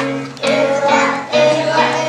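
Children singing a song to musical accompaniment, in held notes with two brief breaks between phrases.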